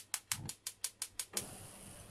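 A gas hob's spark igniter clicking rapidly, about six clicks a second, as the burner under the pot is lit. The clicking stops about a second and a half in.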